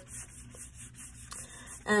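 A watercolor paintbrush rubbing in soft strokes across wet paper as colors are blended.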